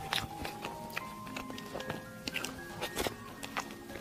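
Soft background music of held notes that change every half second or so, with scattered small clicks and mouth sounds of eating a creamy dessert with a spoon.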